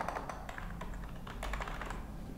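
Computer keyboard being typed on: a quick run of keystrokes entering a word.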